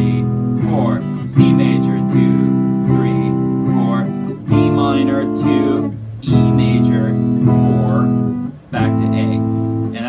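SG electric guitar strummed with a clean tone, playing full open chords of an A minor, E major, C major, D minor progression, with a new chord struck about every two to three seconds.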